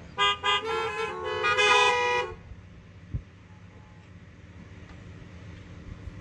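Several car horns honking at once: two short toots, then longer overlapping honks at different pitches for about two seconds, given in place of applause at the end of a song. A single short knock follows about a second later.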